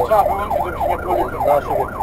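Fire engine's siren sounding in a fast wail, its pitch rising and falling about twice a second, heard from inside the truck's cab over the low rumble of the engine.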